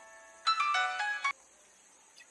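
Mobile phone ringtone: a quick melodic run of bell-like notes about half a second in, cut off suddenly a little after a second in as the call is picked up.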